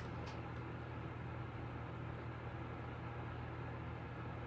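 Steady low hum over a faint even hiss, the unchanging background noise of a small room, with one faint tick about a third of a second in.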